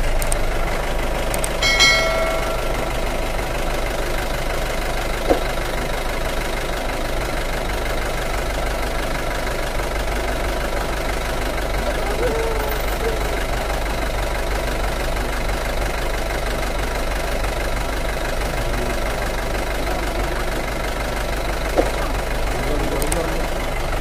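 Vehicle engine running steadily at low revs, heard from inside the vehicle, with a deep, even rumble. Two short clicks stand out, one about five seconds in and one near the end.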